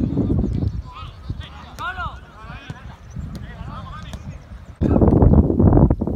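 Footballers' shouts and calls on a training pitch, with scattered thuds of the ball being kicked, over wind rumble on the microphone. The rumble starts again suddenly and louder near the end.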